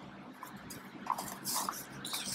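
Bernese mountain dog mouthing and chewing a cardboard tube: faint, scattered crinkling and crunching of the cardboard, loudest about a second and a half in.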